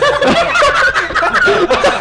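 Several people laughing hard together, overlapping loud bursts of laughter.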